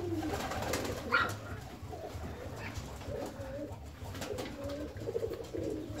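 A flock of fancy pigeons cooing softly over a low steady hum, with a brief sharper sound about a second in.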